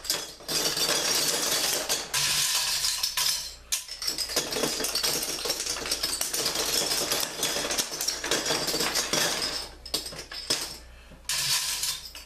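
Loose metal bottle caps rattling and sliding against each other and the glass inside a wooden shadow box as it is rocked, in a dense, continuous clatter. It breaks off briefly twice and pauses for nearly a second near the end.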